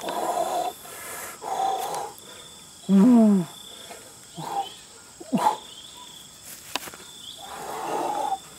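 A man's wordless straining grunts and exclamations while handling a large python: short breathy puffs and one loud falling 'ooh' about three seconds in. A faint steady high insect drone runs underneath.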